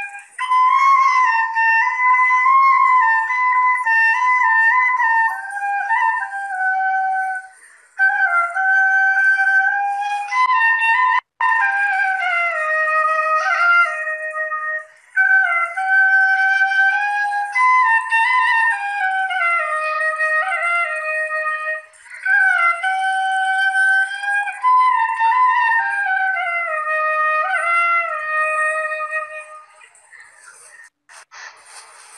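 Solo bamboo flute (Bengali bashi) playing a slow, emotional melody, one note at a time in several phrases separated by short breaks for breath.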